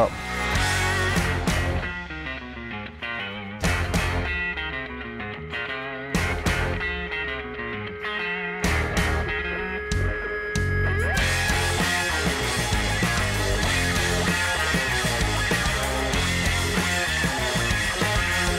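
Background music with guitar; it becomes fuller and steadier about eleven seconds in.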